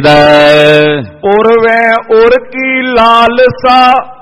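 A man's voice chanting a line of verse to a melody. It opens on one long held note of about a second, then moves through several shorter sung phrases.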